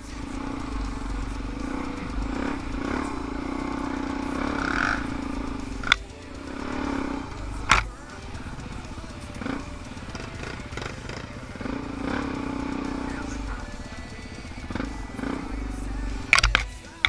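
A single-cylinder four-stroke dirt bike engine running at low revs, with two sharp knocks in the middle, under background music.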